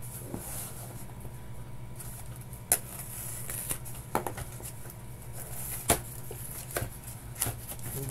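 Cardboard packaging being handled and unfolded by hand: soft rubbing and scraping of the cardboard, with a few sharp taps and clicks spread through.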